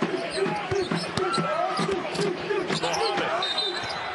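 Basketball dribbled on a hardwood arena court, a run of bounces, with short squeaks and arena crowd voices behind.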